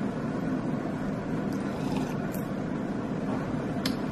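Steady low room hum, with a few faint short sounds as coffee is sipped from a ceramic mug, about two seconds in and again near the end.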